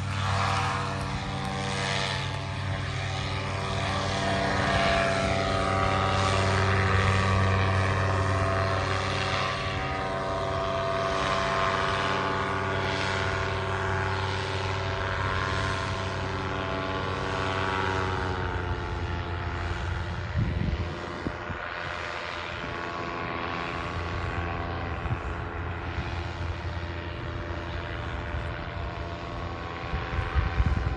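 Paramotor engine and propeller running steadily as it climbs away, getting quieter and dropping slightly in pitch past the halfway point. Wind buffets the microphone a few times in the second half.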